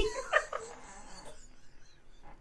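Two women laughing, stifled behind their hands: a couple of brief high laughs in the first half second, then fading to quiet breathy laughter.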